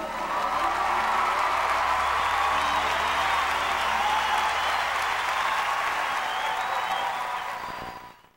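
Large concert audience applauding and cheering after a choir song ends; the applause fades out near the end.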